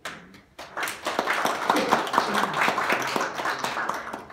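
Audience applauding, the clapping building up about a second in and carrying on to the end, with a single sharp knock at the very start.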